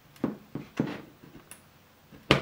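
An HDMI plug being pushed into the port of a GMKtec G3 Plus mini PC: three sharp clicks and knocks in the first second and a fainter one about halfway. The port is stiff and clunky.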